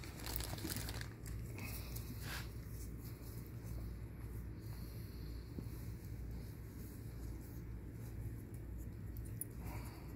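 Gauze dressing pad and its wrapping being handled, folded and pressed onto the leg by gloved hands, a soft crinkling rustle that comes in short bursts, most clearly near the start, over a steady low hum.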